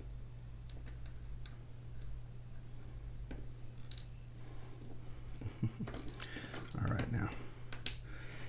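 Small metal and titanium knife parts being handled and fitted together by hand, the handle scale and pivot insert clicking and scraping. A few separate light clicks come first, then a busier stretch of clicking and rubbing in the second half.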